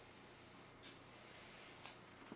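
Near silence: room tone, with two faint soft rustles about a second apart.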